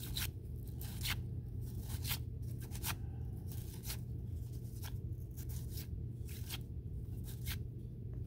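Baseball cards being flipped by hand one at a time from one stack to another, each card giving a short papery flick, about two a second at an uneven pace.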